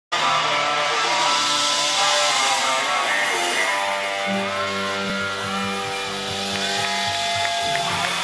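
A live band playing loud music through a concert PA. Held, buzzy tones fill the first half, then a bass guitar line comes in about halfway with a steady rhythmic pulse.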